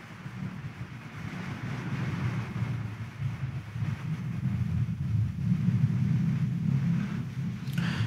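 Steady low rumble and hiss of room ambience in a large church, slowly growing louder.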